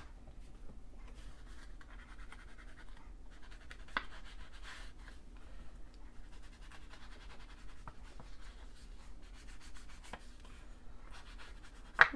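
Round ink blending tool rubbed and dabbed along the edges of a paper tag, a soft scratchy scrubbing on paper, with a few light taps.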